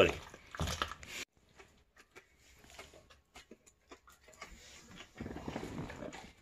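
A Doberman gnawing and chewing on a raw pork hock: faint, irregular clicks and crunches, with paper crinkling. A louder burst in the first second cuts off abruptly.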